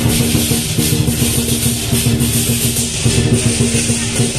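Lion dance percussion: loud drumming with cymbal crashes in a steady fast rhythm, over sustained low pitched tones.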